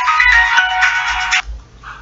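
A short, high electronic melody that cuts off suddenly about one and a half seconds in.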